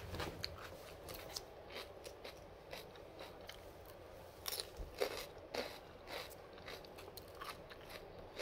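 A person chewing crunchy raw bitter gourd (pare) close to the microphone: irregular crisp crunches, loudest in a cluster about halfway through.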